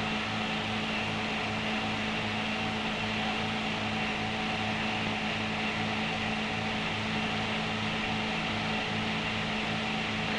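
Steady background hum and hiss on an old film soundtrack, with a low hum that pulses a couple of times a second and never changes.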